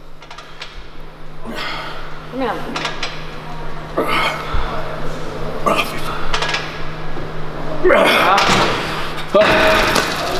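A man breathing hard and straining with effort as he pushes through repetitions on a seated press machine, one forceful breath every second or two, the last ones longer and louder. A steady low hum runs underneath.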